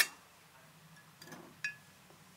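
Enamel pot lid clinking onto the pot: one sharp clink at the start, then a lighter clink with a short ring about a second and a half later.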